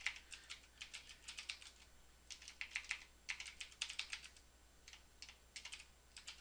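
Computer keyboard typing in quick runs of keystrokes, with short pauses about two seconds in and again around the four-to-five-second mark.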